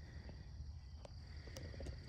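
Quiet outdoor ambience: faint, steady high-pitched chirring of insects in the grass, over a low rumble, with a couple of faint ticks.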